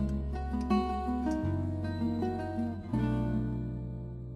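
Background music: plucked acoustic guitar over held bass notes that change twice, fading toward the end.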